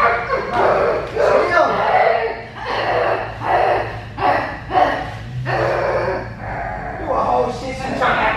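A woman imitating a dog, giving a run of short human-voiced barks, about two a second.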